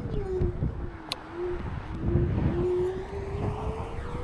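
Electric motor of a NIU KQI 2 Pro kick scooter whining, its pitch dipping and then climbing steadily as the scooter picks up speed, over wind and tyre rumble. One sharp click about a second in.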